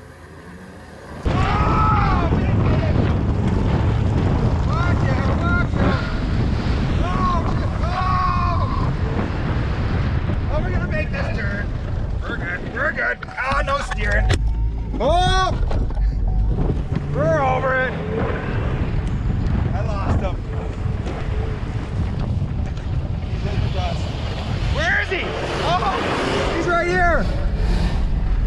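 Heavy engine and road rumble with wind inside a Suzuki SUV's cabin as it races flat out on a dirt track, rising sharply about a second in. Shouts and whoops from the occupants break in over it throughout.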